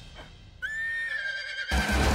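An animated horse gives one whinny, a held, slightly falling call of about a second. It starts about half a second in and cuts off abruptly near the end.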